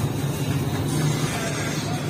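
Steady low rumble from a flatbread bakery's fired oven, its burner running constantly.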